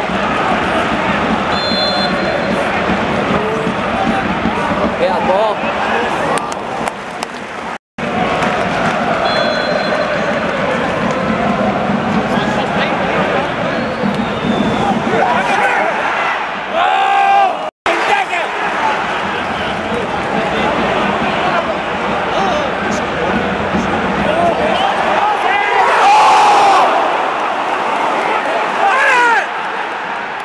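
Football stadium crowd singing and chanting, a dense mass of voices throughout, swelling around 26 seconds in. The sound drops out for an instant twice, about 8 and 18 seconds in.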